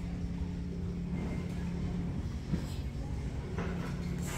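Steady low hum and rumble of store background noise, with no distinct event standing out.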